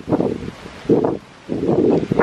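Wind buffeting the camera's microphone, coming in gusts that swell and drop about three times.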